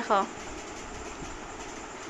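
A short spoken word at the start, then a steady, even background hiss with no distinct sound in it.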